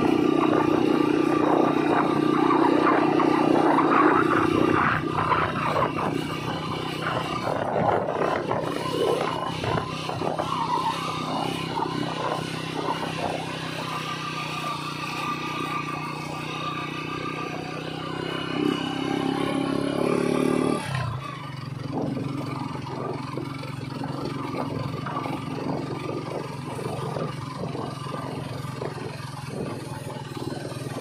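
Motorcycle engine running steadily while riding over a loose gravel road, with the tyres crunching over stones. The engine note changes and drops slightly about two-thirds of the way through.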